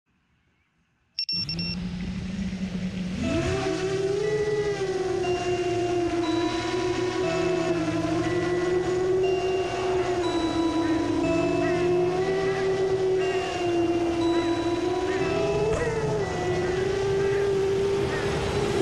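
QAVR-2 FPV quadcopter's electric motors whining. The whine starts a little over a second in as a low steady hum, jumps up in pitch about three seconds in, then rises and falls with the throttle as it flies.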